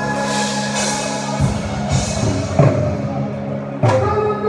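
Live band music played over a PA in a large hall: steady held chords with a few hard drum strikes, no singing in this stretch.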